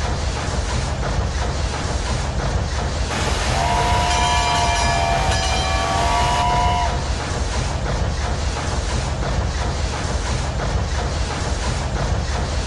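Steam train sound: a steady rhythmic chugging, with a whistle sounding a chord of several held tones from about three and a half to seven seconds in.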